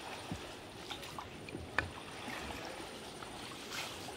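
Wooden boat being paddled through shallow water: faint swishing and lapping from the paddle strokes, with a few light knocks.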